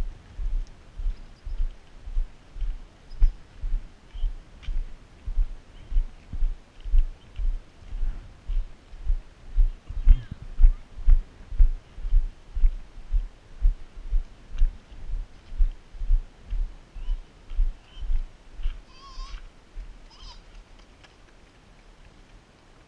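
Walking footsteps of the person carrying the camera, heard as low thumps about twice a second. They fade out a little before the end.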